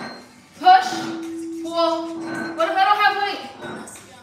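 A background song with a voice singing, holding one long steady note about a second in.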